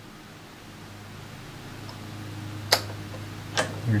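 Two sharp clicks from the front-panel knobs of a Johnson Viking Ranger II tube transmitter as the rotary band switch is turned to the next band, over a steady low hum.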